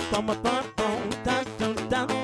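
Live acoustic blues band playing: an acoustic guitar strumming over hand-played conga drums, with a steady beat.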